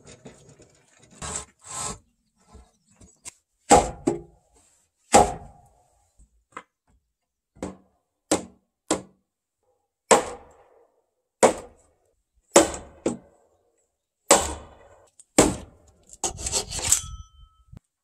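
Hand work on wood: a series of short, sharp strokes on timber, spaced irregularly about a second apart, with a quicker run of strokes near the end.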